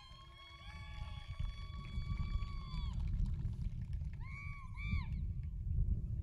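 Distant celebratory noise from spectators: a long steady pitched note lasting about three seconds, then two short rising-and-falling whoops. Underneath is a low rumble of wind on an outdoor microphone.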